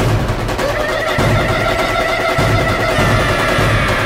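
Background score music: a long held synth tone with overtones over a steady low pulsing beat.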